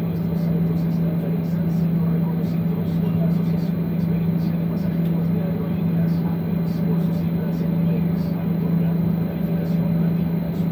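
Steady drone inside an airliner cabin parked at the gate, with one strong, constant low hum under a wash of air noise, and passengers' voices murmuring indistinctly.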